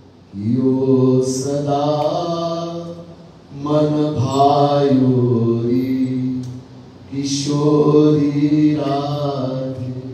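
A man's voice chanting a line of a Hindi devotional verse to a slow melody, in three long phrases with held notes and short breaks between them.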